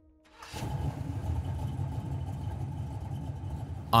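Steady rumble of car engines idling, fading in about half a second in.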